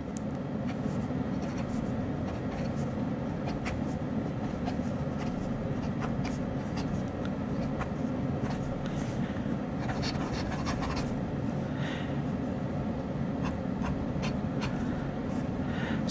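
The fine nib of a Hong Dian fountain pen writing on paper, heard only as faint, scattered scratches. The nib is smooth, writing quietly with little sound coming from it. A steady hum from a room air conditioner runs underneath and is the loudest sound.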